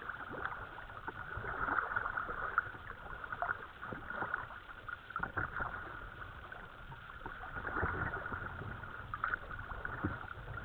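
Kayak paddles dipping and pulling through calm canal water, with irregular splashes and water running and trickling along the kayak hull.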